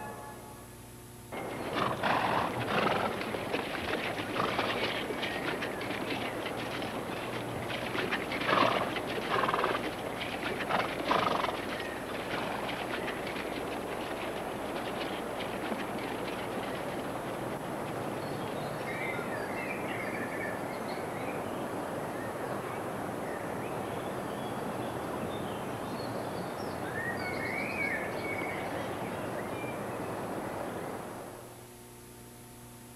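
Outdoor river ambience: a steady rush of flowing water, with irregular knocks and splashes in the first several seconds and a few bird chirps later on.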